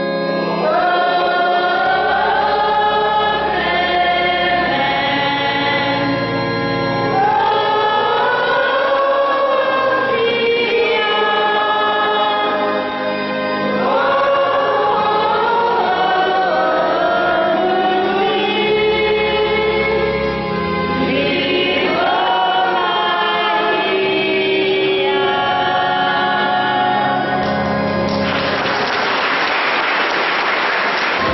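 A choir of nuns singing a hymn in many voices over low, step-wise bass notes. Near the end a burst of applause breaks in over the singing.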